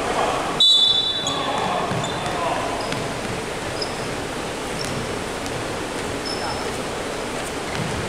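Referee's whistle: one short, shrill blast about half a second in, stopping play. Voices and the echoing noise of a sports hall follow.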